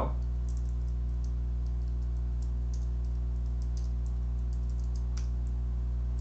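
Computer keyboard keys being pressed, a scatter of faint clicks with a sharper one near the end, over a steady low electrical hum.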